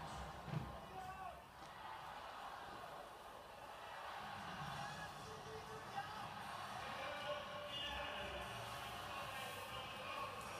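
Sound of a stadium athletics broadcast played on a television and heard across a room: a low murmur of crowd with indistinct voices. A single thump about half a second in.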